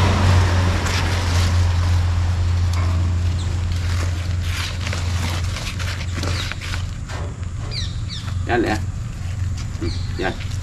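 A steady low hum with scattered short rustles and clicks from snake tongs and a woven plastic sack being handled as a snake is steered into it. A few brief voice-like or chirping sounds come near the end.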